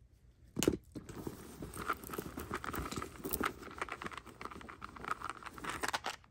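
Hands rummaging through a handbag's inner pocket: steady rustling and crinkling of the contents, with a sharp click about half a second in.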